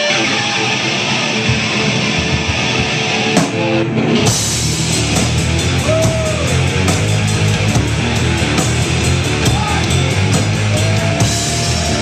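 Live heavy metal band playing loud, with distorted electric guitars, bass and drum kit. A sparser opening gives way to the full band with pounding drums about four seconds in.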